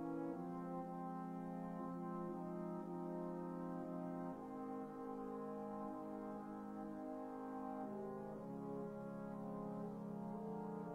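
Sibelius score playback of a slow brass band passage in sampled brass sounds: a horn melody over sustained chords, the harmony changing about every four seconds.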